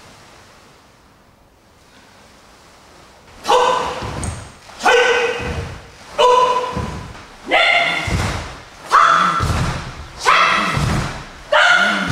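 Karate class drilling punches in unison: each punch is marked by a short, sharp shout and a low thud on the wooden floor. The drill starts about three and a half seconds in and repeats seven times at a steady beat, about one every 1.4 seconds, ringing in the hall.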